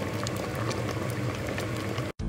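A pot of Thai bamboo-shoot curry with mushrooms boiling: a steady bubbling with many small pops of bursting bubbles.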